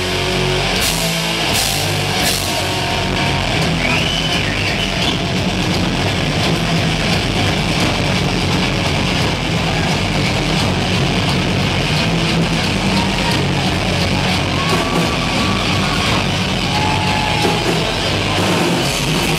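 Heavy metal band playing live: distorted electric guitars, bass and drums, loud and dense throughout, heard from the audience floor. A few sliding high notes ride over it, about four seconds in and again in the last third.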